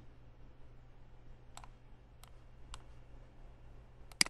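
Three faint computer mouse clicks, about half a second apart, over a low steady hum.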